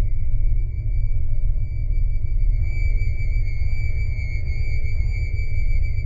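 Background music: an eerie ambient drone with a sustained high tone over a deep, steady low rumble.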